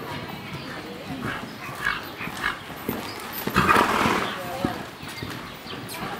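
Horses' hooves trotting on the soft dirt footing of an indoor arena, with voices in the background. A short, louder rush of noise comes a little past halfway.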